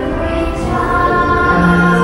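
Children's choir singing in harmony, holding long sustained notes, with a new lower note entering about one and a half seconds in.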